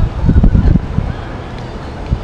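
Wind buffeting the camera's microphone: a loud, low rumble lasting about a second, then fading back to the steady background.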